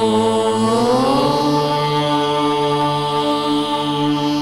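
A voice chanting a long held note over a steady instrumental drone; the note glides up in pitch about a second in and then holds.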